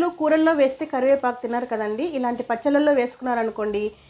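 A woman speaking in continuous narration; no other sound stands out.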